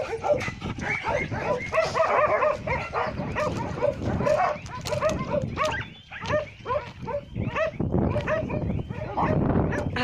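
Several dogs barking and yipping in quick, overlapping calls, with a short lull about six seconds in.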